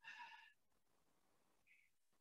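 Near silence: a pause in speech, with only a faint, brief sound in the first half second.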